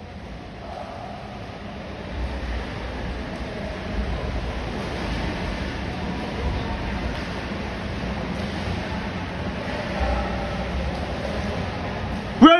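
Indoor pool ambience: a steady wash of water noise that grows louder about two seconds in, with a low rumble that comes and goes.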